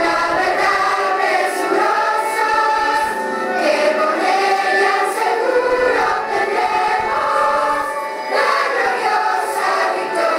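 A choir singing.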